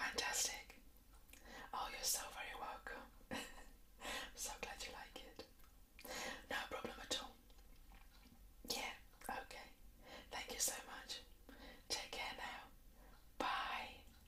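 A woman whispering softly in short phrases with brief pauses between them.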